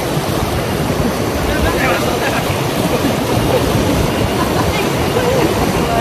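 Fast, strong river rapids rushing steadily around a raft, a loud even wash of water.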